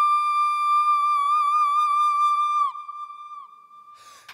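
A female singer holding one very high note with no accompaniment, steady at first and then with vibrato. The note falls off in pitch about two and a half seconds in, leaving a short fading echo.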